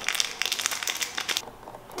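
Small plastic accessory packet crinkling as it is opened by hand to get at spare rubber earbud tips: a quick run of crackles for about a second and a half, then quieter.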